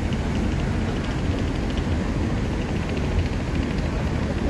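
Steady low rumble of wind on the microphone mixed with city traffic noise, picked up while moving along a street.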